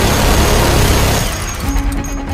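ECHO 80cc two-stroke backpack leaf blower running at full throttle, engine noise and rushing air blasting out of the wide barrel; the noise dies down about two-thirds of the way through. Music begins faintly near the end.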